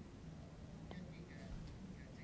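Faint speech, low in the mix.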